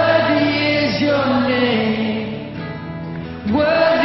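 Live worship song: a male lead singer sings over a band with backing voices, with a held note near the start and a new phrase rising in about three and a half seconds in.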